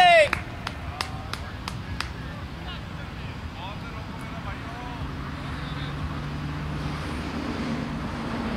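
Hand claps, six sharp claps at about three a second, then faint distant voices across an open field with a low steady hum near the end.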